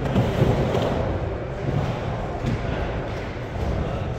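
Skateboard wheels rolling over wooden ramps, a steady low rumble.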